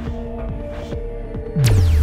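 Background music: a low drone with a few held tones, then near the end a sudden loud bass hit whose pitch falls, with a sweep sliding downward.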